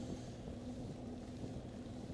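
Steady wind rush and road rumble on the microphone of a Cycliq bicycle camera while riding, with a faint steady hum underneath.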